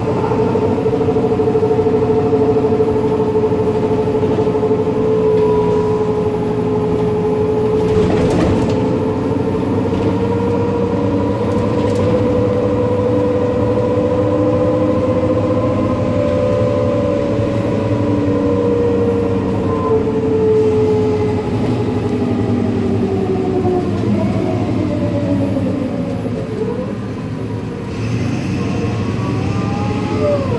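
Inside a MAN NL283 city bus on the move: the ZF automatic gearbox whines over the diesel engine's running. The whine holds steady for most of the time, falls in pitch about two-thirds of the way through as the bus slows, then rises briefly near the end.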